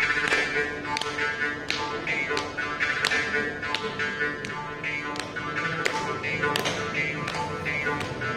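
Morching (mouth harp) plucked in a steady rhythm, about three strikes every two seconds, its twang changing in vowel colour after each pluck. A steady drone sounds beneath it throughout.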